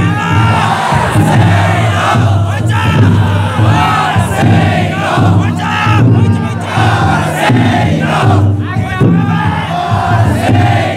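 A large crowd of taikodai bearers shouting together in rising and falling calls, over the regular beat of the big taiko drum carried inside the float.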